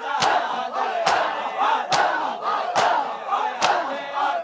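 A crowd of mourners beating their chests in unison in matam, five sharp slaps landing together at just over one a second, with many men's voices calling out between the strikes.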